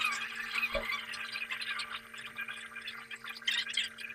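A man chewing a bite of egg roll close to a clip-on microphone: soft, wet, crackly mouth sounds over a steady low hum, with one dull thump about three quarters of a second in.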